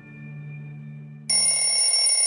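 Faint sustained music notes, then, a little over a second in, an alarm clock bell suddenly starts ringing loudly and steadily.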